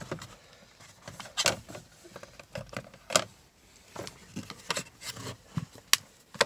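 Plastic trim piece above an Audi Q5's instrument cluster being pried and pulled with a trim tool: scattered light plastic clicks and rubbing, with a sharper click near the end.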